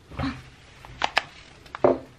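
A paper coffee bag handled close to the microphone: a few sharp crinkles and taps, the loudest near the end.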